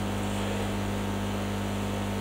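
Steady electrical hum with an even hiss: room tone from the venue's sound system during a pause.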